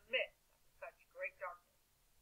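A woman speaking in short phrases, her voice thin and narrow like speech heard over a phone line.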